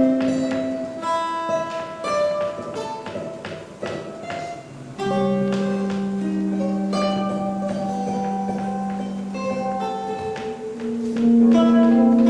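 A small ensemble of guitars, classical nylon-string guitars among them, playing a slow ambient piece of plucked notes that ring on. It thins out and drops quieter a few seconds in, then swells back with a long held low note under the plucking.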